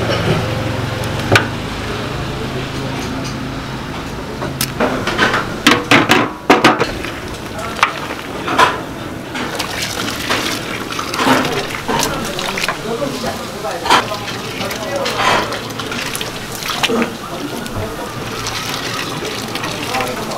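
Noodles cooking in a large aluminium pot of boiling water: stirring and sloshing in the water, then the noodles are scooped out with a wire strainer, with water running off and scattered clanks of the strainer against the pot. A low steady hum runs under the first few seconds.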